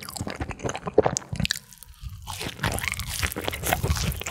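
Close-miked crunching and chewing of a seasoning-coated fried cheese stick. The crunching breaks off briefly a little before the middle, then comes back thicker and louder.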